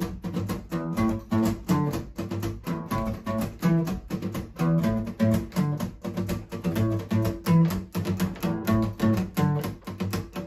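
Acoustic guitar playing an instrumental passage: a steady, quick rhythm of strokes with chords over low bass notes.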